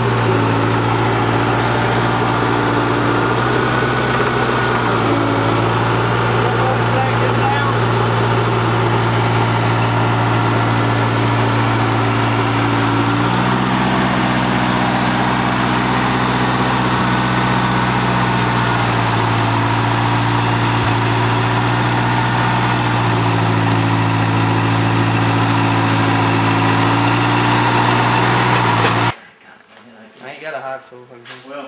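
Engine of a Case skid-steer loader running steadily under load while it lifts pallets of bee boxes. Its engine speed steps up and down several times, and the sound cuts off abruptly near the end.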